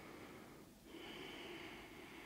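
Faint, calm breathing of a person standing still, picked up close by a clip-on microphone: two breaths, the second beginning about a second in.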